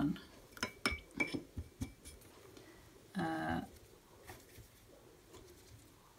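A few quick, light clinks in the first two seconds, one leaving a brief faint ring, from a paintbrush knocking against hard painting gear as it moves from the paper to the paint box. A short hummed 'mm' of a voice comes about three seconds in.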